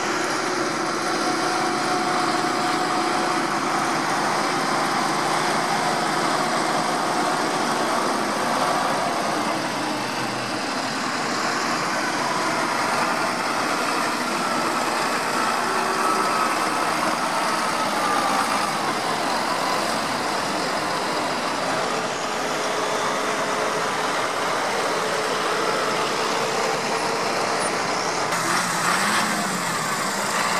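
A procession of large farm tractors driving past one after another, their diesel engines running steadily with tyre noise on a wet road. A McCormick MTX passes about halfway through and a Claas near the end.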